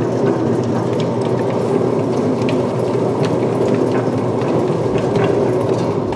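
Escher spiral dough mixer running steadily, its hook kneading a large batch of bread-roll dough in the steel bowl.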